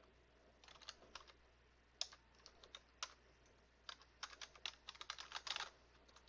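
Faint typing on a computer keyboard: scattered single keystrokes at first, then a quick run of them near the end as a long decimal number is typed in.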